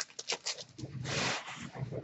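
Cards and pack wrapper rustling as cards are pulled from a freshly opened hockey card pack: a few short rustles, then a longer swish about a second in.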